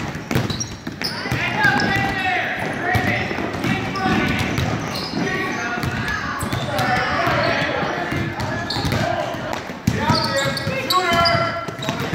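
Basketball being dribbled on a hardwood gym floor amid overlapping shouts and chatter from players and spectators, echoing in the large gymnasium.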